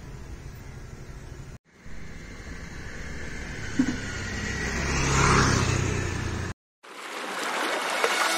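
Outdoor street ambience with a motor vehicle's engine growing louder as it approaches, broken by two short cuts to silence. Near the end comes a rising rush of noise.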